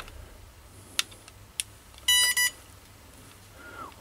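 Handheld network cable tester switched on: two light clicks, then a short double electronic beep about two seconds in.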